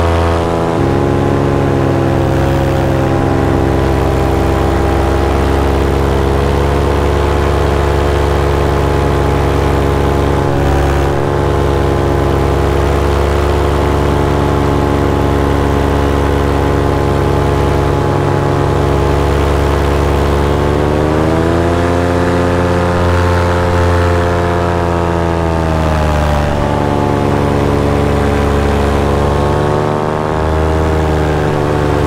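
A paramotor's two-stroke engine and propeller running steadily in flight. The engine speed dips slightly within the first second, climbs about 21 seconds in, eases back around 26 seconds, and climbs again near the end.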